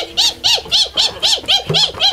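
A person's voice imitating a monkey: a rapid run of short hoots, each rising then falling in pitch, about four a second.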